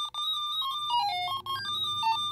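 Electronic ringtone: a quick melody of pure beeping tones stepping up and down in pitch, dipping lower about a second in, signalling an incoming call.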